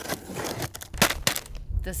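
Cardboard box and bag being handled and opened by hand: a rustling crinkle, then a few sharp clicks and snaps about a second in. Low wind rumble on the microphone comes in near the end.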